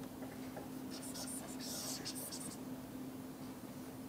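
Plastic stylus tip scratching and tapping across a tablet screen in a cluster of quick strokes from about one to two and a half seconds in, over a steady low electrical hum.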